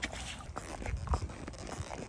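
Palomino horse walking, with scattered short hoof clops and a louder low thud a little after a second in.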